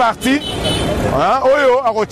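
A man speaking, with road traffic behind him and a car driving past, heard most clearly in a short break in his speech.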